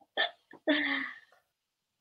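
A woman laughing: a short, sharp catch of breath, then a voiced laugh of about half a second.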